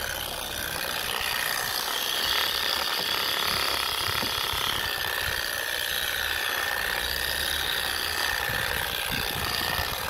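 Random orbital polisher running steadily with a soft foam pad pressed on fiberglass gelcoat, working a glaze into the surface; a steady mechanical whine.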